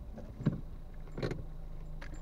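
A car running with a low, steady hum, with two short knocks about half a second and a second and a quarter in.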